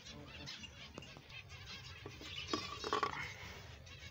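A colony of small finches chirping, a steady chatter of many short high calls overlapping, with a louder, lower call about two and a half seconds in.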